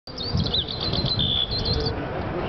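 Small birds chirping: a quick run of short high notes and glides, with one held whistle about halfway through, over a steady low rumbling noise.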